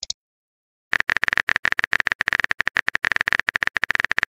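Rapid, dense clicking of a phone keyboard typing sound effect, starting about a second in after a brief silence.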